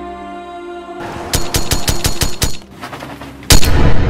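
Automatic gunfire: a burst of about eight rapid shots, roughly seven a second, over background music. After a short pause comes a single much louder boom near the end.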